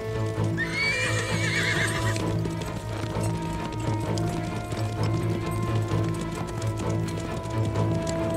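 A horse whinnies once, a wavering call beginning about half a second in and lasting under two seconds, with hooves clopping on the ground. This plays over steady dramatic background music.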